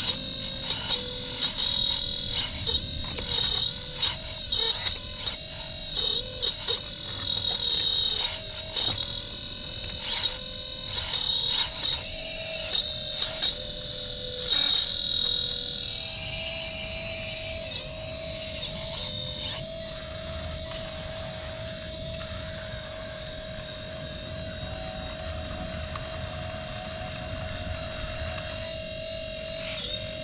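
1/12-scale RC hydraulic excavator modelled on a Caterpillar 339D, its hydraulic pump whining steadily and dipping in pitch each time it takes load. Through the first half, crackles and snaps of the bucket tearing through roots and leaf litter run over the whine. In the second half the whine runs steadier.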